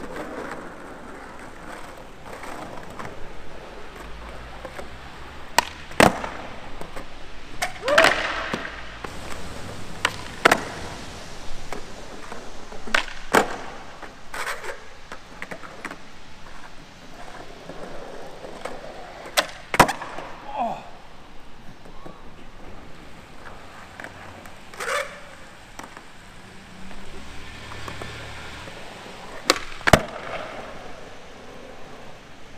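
Skateboard wheels rolling over smooth concrete, broken every few seconds by sharp wooden clacks as the deck's tail pops and the board lands or slaps down during tricks, about ten in all.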